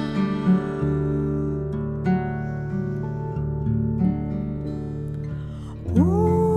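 Acoustic guitar picking chords over a bass line in an instrumental break of a slow huapango-ranchera ballad. A sung note slides in right at the end.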